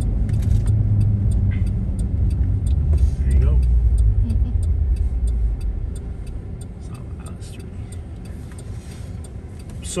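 Cabin sound of a lifted pickup on mud-terrain tires: a low engine and road rumble as it rolls, fading about six seconds in as it stops at a light. A turn signal clicks steadily, about two ticks a second.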